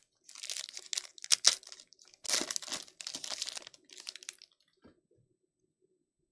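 Foil wrapper of a Panini Luminance football trading card pack being torn open and crinkled, in a run of crackling bursts over about four seconds with one sharp tear about a second and a half in.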